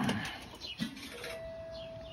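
Paccar MX-13 diesel running just after a start on starting fluid, with a steady single-pitch warning tone from the truck's dash coming on about a second in and holding.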